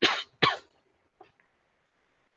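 A person coughing twice in quick succession, followed by a faint click about a second later.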